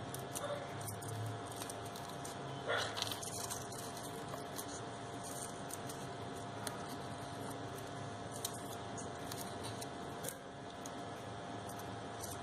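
Faint rustling and crinkling of crepe paper and stretched floral tape as they are wound round a wire stem, over a steady low hum, with one brief louder sound about three seconds in.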